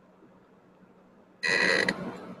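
A sudden loud buzzer-like tone with a bright, ringing edge, starting about one and a half seconds in. It holds steady for about half a second, then cuts off, leaving a short echo in the room.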